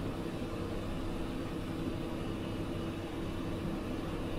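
Steady low hum of room noise in a large church hall, from electric fans and the sound system, with no sudden sounds.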